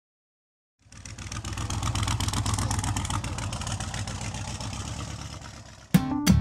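Air-cooled Porsche 911 flat-six engine running, coming in about a second in, swelling, then slowly fading away.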